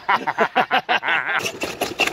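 People talking and chuckling, in short broken bursts that the speech recogniser did not make out as words.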